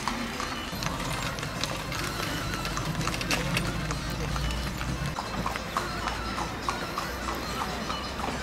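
Horse's hooves clip-clopping on a paved street as it pulls a wooden cart, with a low rumble for the first few seconds.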